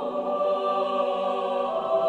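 Church choir singing sustained chords in parts, the chord changing at the start and again near the end, and growing louder.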